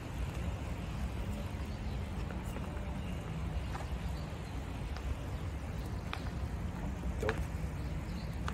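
Steady low outdoor rumble with a few faint, short ticks scattered through it.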